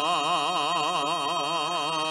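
A male tonada singer holds a long final note with a wide, even vibrato of about five pulses a second. Under it sound the steady drone and held note of an Asturian gaita (bagpipe).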